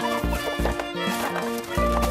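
Background music: a melody over a repeating bass line.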